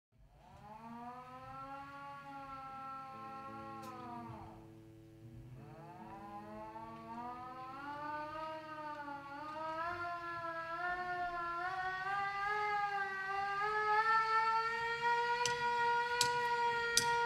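A siren-like wail: one pitched tone that sags and dies away about four seconds in, starts up again a second later, then climbs slowly in pitch while growing steadily louder.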